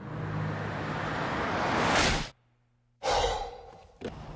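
An approaching car: a rush of noise over a low steady engine note swells for about two seconds and cuts off abruptly. After a short near silence, a sudden burst of noise fades away over about a second.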